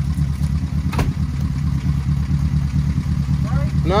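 Austin 7's small four-cylinder side-valve engine idling steadily, with a single sharp click about a second in.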